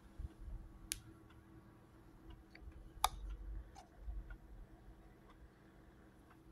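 Faint scattered clicks, the sharpest about a second in and about three seconds in, over low rumbling handling noise.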